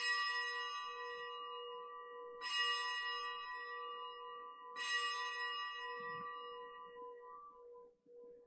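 A bell struck three times, about two and a half seconds apart, each stroke ringing clearly and fading before the next: the consecration bell marking the elevation of the host at Mass.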